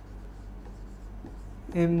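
Dry-erase marker writing on a whiteboard, a faint scratching over a low steady hum. A man's voice comes in near the end.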